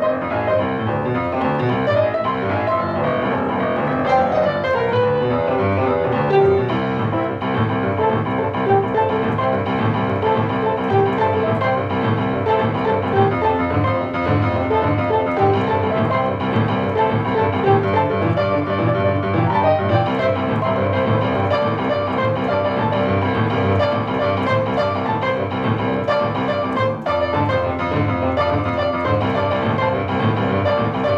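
Upright piano playing a boogie-woogie: both hands at work, a rolling left-hand bass pattern under right-hand chords and riffs, steady and continuous.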